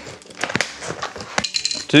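A cardboard parcel being cut open and unpacked: a blade scraping through packing tape, and cardboard flaps and packing rustling and crinkling, with scattered small clicks.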